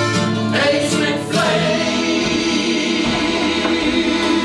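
Live acoustic folk music: two acoustic guitars strummed alongside a button accordion, with a woman singing. After a few strummed strokes, a full chord is held and sustained from about a second and a half in.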